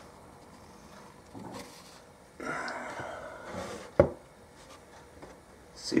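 Soft rubbing and rustling, with a single sharp knock about four seconds in.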